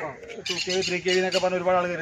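A man speaking in a steady explaining voice.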